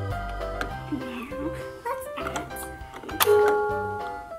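Electronic tune from a LeapFrog Scoop & Learn toy ice cream cart, steady held notes over a bass line, with a few sharp clicks of plastic toy pieces, the loudest a little after three seconds.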